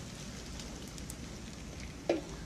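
Hash browns and crab frying in a hot pan, a steady sizzle with faint crackling.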